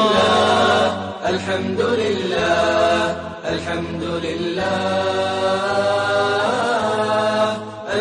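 Islamic nasheed: a voice sings long, drawn-out, ornamented notes over a steady low drone, with short breaks between phrases.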